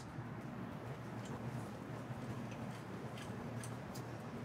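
A few faint, light metallic clicks of steel bolts being handled and started by hand into the flange joining the electric rotary actuator to its A drive, over a steady low hum.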